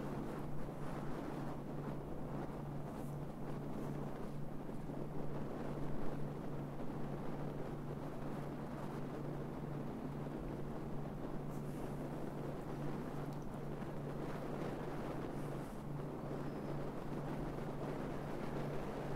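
Wind rushing over the microphone of a camera mounted on the roof of a moving car, mixed with the car's road noise and turned well down, with a steady low hum underneath. The noise swells slightly about a third of the way through.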